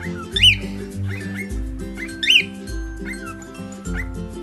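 Music with a steady bass beat, over which a cockatiel gives two loud rising-and-falling whistles about two seconds apart, with shorter chirps between them.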